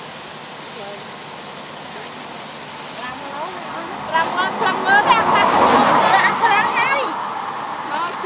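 Steady outdoor background noise, then people's voices, some of them high-pitched, over a louder rushing noise that swells about five seconds in and fades before the end.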